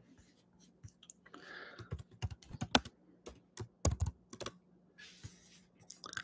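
Typing on a computer keyboard: a run of separate, irregularly spaced key clicks.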